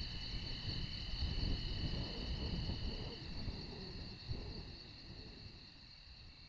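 A night chorus of crickets: steady high trilling with a fast pulse, over a low rumble. It fades out over the last couple of seconds.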